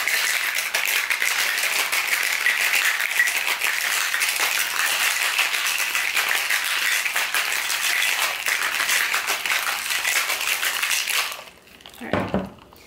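Ice cubes rattling inside a cocktail shaker as a drink is shaken: a fast, dense, continuous rattle that stops abruptly near the end.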